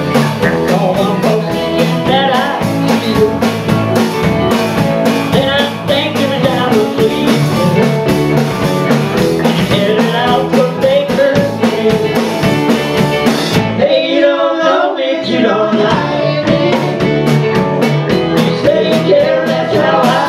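Live rock band playing, with electric guitars, bass, drums and singing. About fourteen seconds in, the drums and bass drop out for a second or two, then the full band comes back in.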